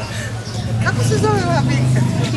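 People in a tourist group talking, one voice clearest about a second in, over a steady low hum.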